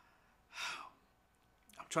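A man's short intake of breath, heard as a brief hiss about half a second in, before he starts to speak near the end.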